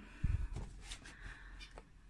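A dull thump about a quarter of a second in, followed by faint light rustling and a few small clicks as a cardboard toy box is handled on a table.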